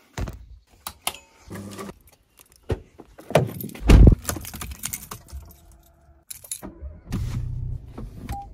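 Car keys jangling and small clicks of handling inside a car cabin, with one heavy low thump about four seconds in. Near the end a steady low engine hum sets in.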